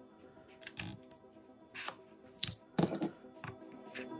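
A few scattered short rustles and taps from hands working a sheet of transfer tape and a plastic scraper tool on a craft mat. The loudest come about two and a half to three seconds in, over soft background music.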